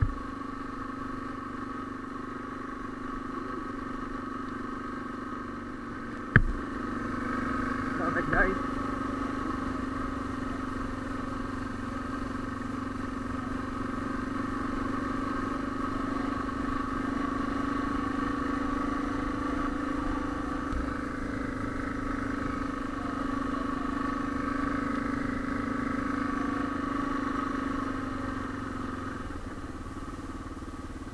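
Suzuki DR650 single-cylinder motorcycle engine running at a steady pull up a steep gravel track. There is one sharp knock about six seconds in and a smaller one about two seconds later.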